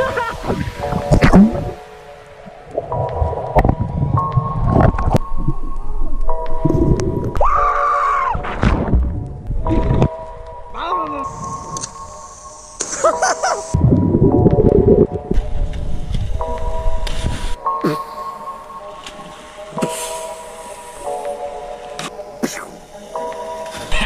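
Background music plays, broken by several loud bursts of noise and water splashes as people jump into a swimming pool.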